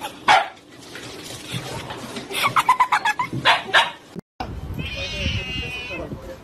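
Husky yipping and barking: one sharp call just after the start, then a quick run of short calls. The sound cuts off suddenly about four seconds in.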